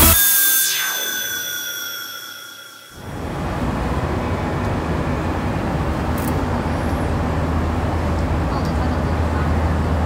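Electronic dance music ends on a final note that slides down in pitch and fades out over about three seconds. Then comes steady outdoor city noise with a low rumble of traffic.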